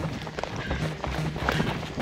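A runner's footsteps striking a rocky dirt trail, over background music with a steady low pulse.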